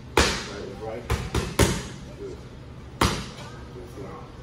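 Punches in boxing gloves smacking into focus mitts: a single sharp smack, then a quick three-punch combination about a second in, and one more smack about three seconds in.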